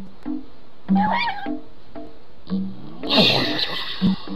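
Cartoon soundtrack of plucked bass music with repeating notes, over which comes a short squeaky animal-like cry about a second in. Near the end a louder cry with a rushing whoosh accompanies the cartoon caveman's lunge.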